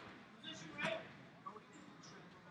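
Faint voices and murmur in a large gym hall between announcements, with a brief louder fragment just under a second in.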